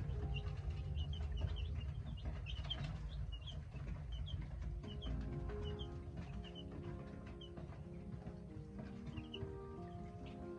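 Baby chicks peeping: many short, high chirps, busiest in the first half and thinning toward the end, over soft background music.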